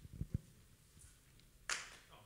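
Handheld microphone handling noise as it is moved away from the mouth: two soft low bumps just after the start, then a short rustle near the end.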